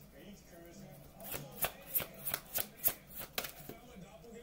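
A deck of oracle cards being shuffled by hand: a run of about ten quick, sharp card snaps starting about a second in and stopping just before the end.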